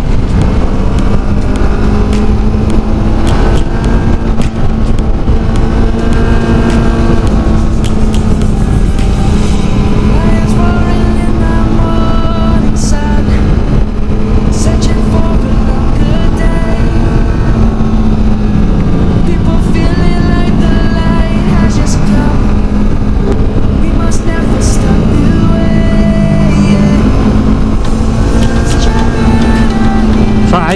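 Kawasaki Versys motorcycle engine running at steady cruising revs, its pitch dropping and rising again a little past the two-thirds mark, mixed with wind noise on the helmet camera. Background music plays over it.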